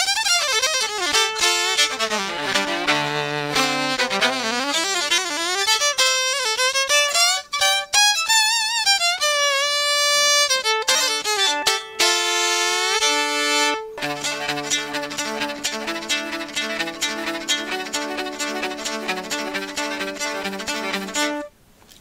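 3Dvarius Line five-string electric violin played solo through its pickup with no effects: a bowed melody with slides and vibrato, then, from about two-thirds in, held chords over fast, even, scratchy rhythmic bow strokes, stopping just before the end. A strip of foam woven through the strings behind the bridge keeps those string lengths from ringing, so the tone stays clean.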